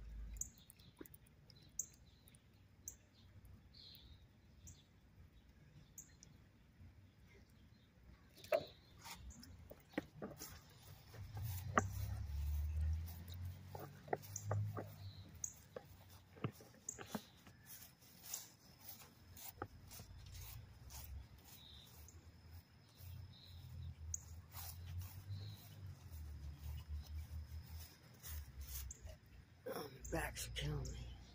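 Faint outdoor sound of a small bird chirping repeatedly, short high chirps about once a second, while a handheld phone is carried across a lawn, giving scattered clicks and stretches of low rumbling handling and footstep noise.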